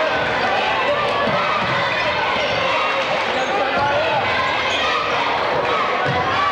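Crowd voices filling a gym, with a basketball being dribbled on the hardwood court, its bounces thudding a few times under the noise.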